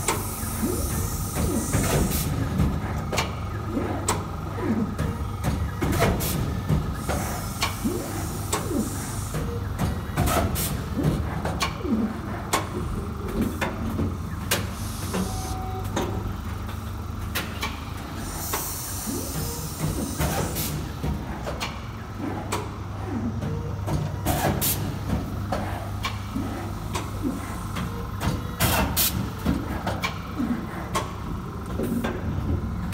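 Horizon HT-30C three-knife book trimmer running through its clamping and trimming cycle: a steady motor hum with many sharp clicks and knocks from the mechanism, and a hiss four times, every few seconds.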